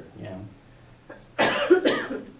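A person coughing: a short, loud cough about one and a half seconds in, after a quietly spoken 'yeah'.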